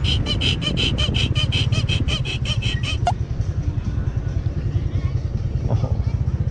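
Motorcycle running while riding, with wind rumble on the microphone. For the first three seconds a rapid high pulsing, about six beats a second, sits over it, then stops.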